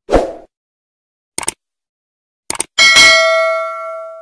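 Subscribe-button animation sound effects: a short pop at the start, quick mouse-style clicks in the middle, then a bell ding near the end that rings on and fades.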